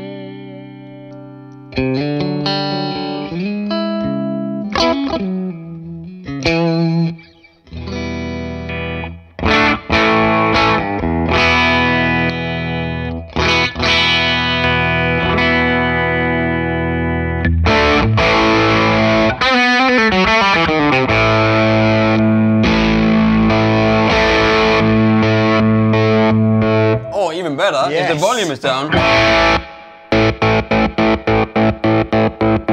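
FGN S-style electric guitar played through a distorted amp: a held note with vibrato, then short chord stabs, then loud, long-ringing chords and riffs. Around two-thirds of the way through the pitch dives, and near the end the pitch warbles rapidly up and down.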